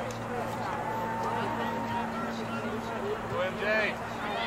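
Distant voices of people on and around a soccer field calling out, too far off to make out words, over a steady low hum.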